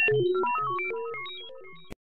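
Electronic logo jingle: a quick run of short, bright synthesizer notes jumping between pitches, fading out steadily and cutting off just before the end.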